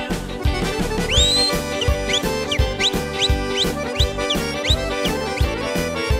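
Upbeat band music with no singing: a steady dance beat about two strokes a second under bass and held chords, with a high lead line of short, repeated upward-sliding notes starting about a second in.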